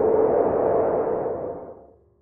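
Reverberating cinematic sound effect from a logo reveal, a noisy wash with a ringing tone in the middle, dying away to silence near the end.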